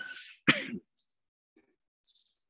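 A person clearing their throat once, sharply, about half a second in, just after a breathy hiss.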